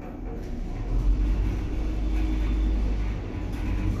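Evans passenger lift car travelling down between floors: a steady low rumble with a faint hum over it, fading near the end as the car nears the ground floor.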